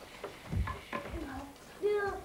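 Young children's brief vocal sounds and chatter while they play, with a few soft low thumps.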